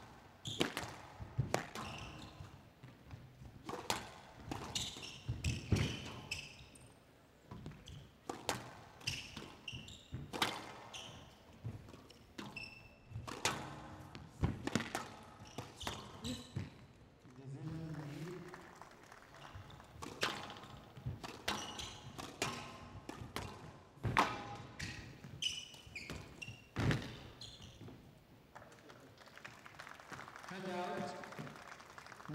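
Squash rally on a glass court: a rubber squash ball is struck by the rackets and smacks off the front and side walls in sharp strikes about once a second. Short high squeaks of the players' court shoes come between the strikes.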